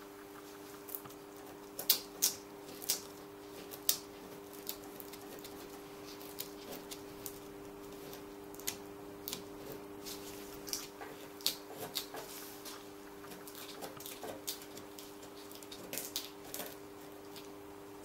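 Irregular small clicks and crackles of a knife blade working under dried piped icing and the thin plastic sheet it is being lifted from, over a steady hum.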